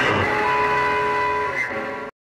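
Garage punk recording with an electric guitar chord ringing out and a steady higher tone held from about half a second in, fading near the end as the song closes.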